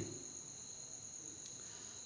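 Faint steady high-pitched whine: two held tones, one very high and one a little lower, over a low hiss.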